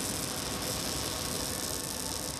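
Electric arc welding on steel plate: a steady crackling hiss from the arc.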